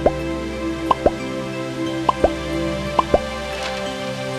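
Soft background music of held, sustained tones, over short rising plops like water drops falling, in pairs about once a second.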